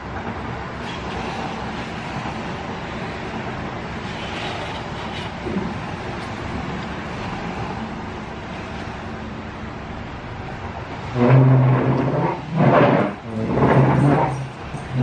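A steady background noise, then from about three seconds before the end a dog barks repeatedly, several loud barks in quick succession.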